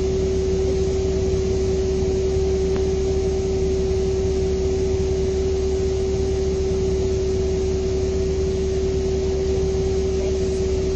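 Volvo B7R coach's diesel engine idling while stationary, heard from inside the passenger saloon: a steady low rumble with a constant hum on top.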